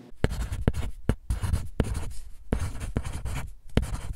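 Pencil scratching on paper in a run of short, irregular strokes: a handwriting sound effect.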